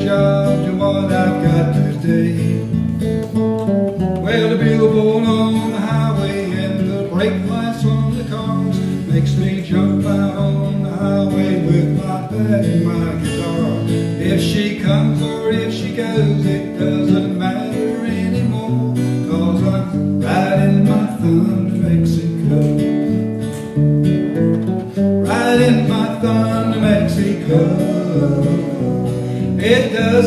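Acoustic guitar strummed with an electric bass guitar playing along, live, in an instrumental passage of a song.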